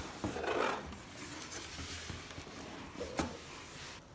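Cardboard box flaps being pulled open by hand: cardboard rubbing and scraping, with a couple of short knocks, the sharpest about three seconds in.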